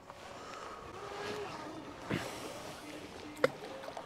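Low wind and sea noise on an open boat, broken by two sharp clicks, a softer one about two seconds in and a louder one about three and a half seconds in.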